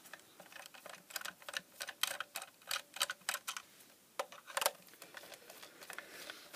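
Long-reach screwdriver turning a screw out of a plastic plug-in device housing: a run of irregular light clicks and ticks as the blade turns in the screw head and the hands regrip.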